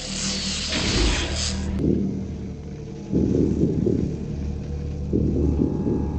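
A deep rumble from a film's sound effects, with a loud surge about three seconds in and another near the end.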